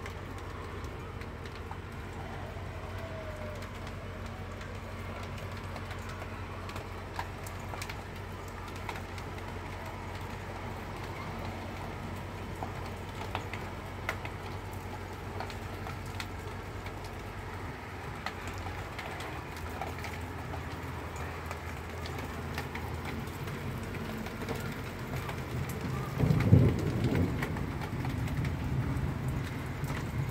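Rain falling steadily in a downpour, as an even hiss, with a louder low rumble near the end.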